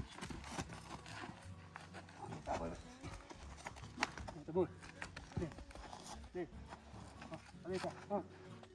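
Hooves shuffling and scraping on dry dirt as a young zebu bull is held by a foreleg and pushed to lie down, with a few short grunts now and then.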